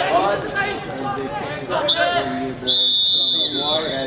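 Referee's whistle on a hockey pitch: a short blast about two seconds in, then a louder blast lasting about a second, over the chatter of spectators talking.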